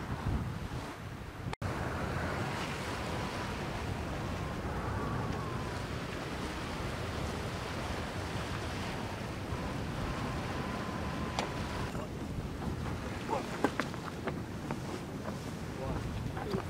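Steady rush of wind and sea water around a racing sailboat under way, with wind buffeting the microphone. A few sharp knocks come near the end.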